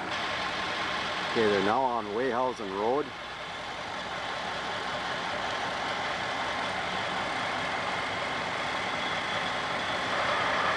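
Heavy semi-truck engine running steadily at low speed as it hauls a building on a house-moving trailer, growing a little louder toward the end as the rig comes past. About a second and a half in, a person's voice calls out once for a second or two, its pitch wavering up and down.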